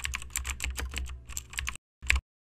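A rapid, irregular run of sharp clicks, about eight a second, over a low hum. It cuts off suddenly near the end, and a short final burst of clicks follows.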